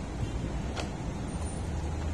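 Wind buffeting the microphone: a steady low rumble with a faint click a little under a second in.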